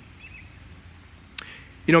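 A pause in a man's speech filled by steady, low outdoor background noise with a faint low hum. A brief faint click comes about one and a half seconds in, and he starts speaking again right at the end.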